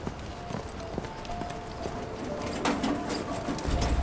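Footsteps of several people walking on a paved street, uneven knocks. A strong low rumble comes in near the end.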